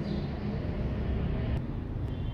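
Steady low background rumble with no speech, and a faint click about one and a half seconds in.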